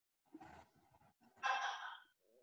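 A short breathy sigh or exhale from a person, heard over a video-call line, about one and a half seconds in, with a fainter breath sound shortly before it.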